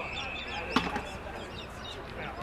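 An umpire's whistle blast, one steady high note about a second long, with a sharp thud of a football being kicked just before it ends, over distant chatter from spectators.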